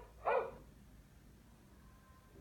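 Recorded dog barking, played back from an animal-sounds app: two short barks in quick succession, the second about a quarter of a second in.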